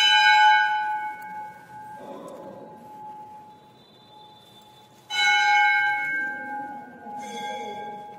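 Hindu temple bell struck twice, about five seconds apart, each stroke ringing with a clear tone that slowly fades; a lighter, higher bell strike comes about seven seconds in.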